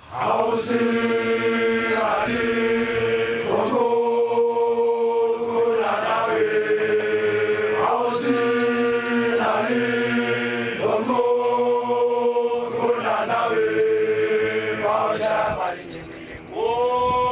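A group of Basotho initiates (makoloane) chanting together in unison, holding long notes that change pitch every two seconds or so. The chant starts suddenly and breaks off briefly at the very end.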